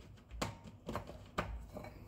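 A few light knocks and clicks, about three in two seconds, as things are handled and set down on a kitchen counter beside a bowl of dough.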